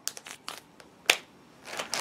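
A soaking-wet, freezer-chilled foam squishy toy being squeezed in the hands, giving a few short crackling squelches, the loudest about a second in.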